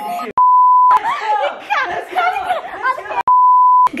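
Two edited-in censor bleeps, each a steady pure beep tone of about half a second that cuts in and out sharply, one near the start and one near the end, with speech between them.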